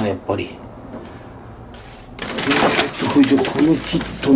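Hands handling small parts and wiring: a short clatter and a click at the start, then a busy stretch of rustling and rummaging from about two seconds in, under a man's low muttering.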